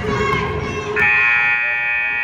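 Gym scoreboard horn sounding about a second in as the game clock hits zero, a loud steady buzz that marks the end of the fourth quarter. Before it, crowd voices.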